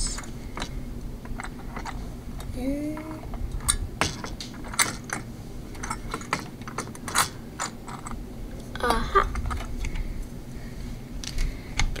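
Irregular light metallic clicks and taps as a Noctua NH-U9S tower CPU cooler is handled and seated onto its mounting bars and screws.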